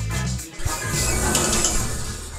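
Cartoon sound effect of an automatic door mechanism opening: a noisy mechanical sound that starts sharply about half a second in, over background music.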